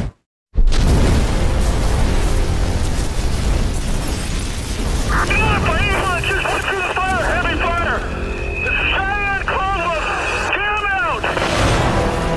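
After a moment of dead silence, a sudden boom, then a loud continuous rumble of fire under dramatic music. From about five seconds in, a high warbling, chirping tone repeats over the rumble and stops shortly before the end.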